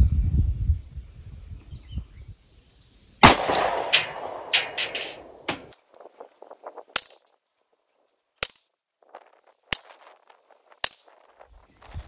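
A string of 9mm pistol shots from a Springfield Hellcat fired from a rest, several sharp cracks at uneven gaps of a second or more, the first the loudest with a trailing echo.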